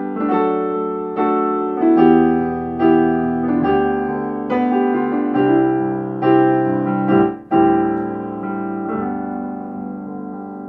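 Yamaha Clavinova digital piano playing a slow passage of sustained chords, a new chord struck about every second, with a brief break about two-thirds through.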